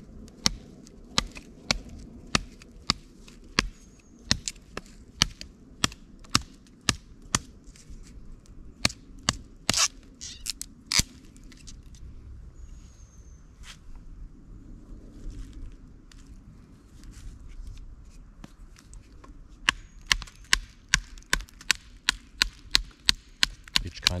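A fixed-blade knife chopping into a green sapling with repeated sharp strokes, about two a second. The strokes thin out in the middle, then come faster again near the end as the wood splits.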